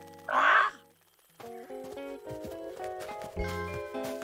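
A short, loud squawk from a cartoon hen near the start, then a brief gap and light background music.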